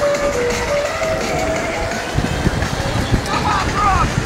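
Steady rushing wind on the microphone and the rolling noise of electric skateboards riding at speed, with background music playing a simple stepping melody over it. A voice briefly calls out near the end.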